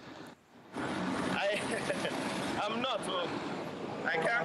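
A man laughing over a remote video-call line, with a steady rush of background noise from the link that comes in under a second in.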